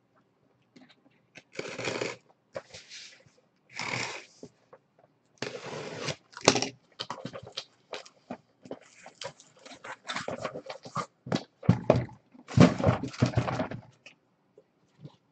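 Cardboard shipping case being opened and lifted off the boxes packed inside: a run of short cardboard scrapes and rustles with scattered clicks, loudest near the end.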